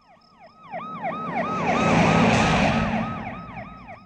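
A siren sounding a fast, repeating falling yelp, about four cycles a second, while a vehicle passes: its noise swells to a peak about two seconds in and then fades away.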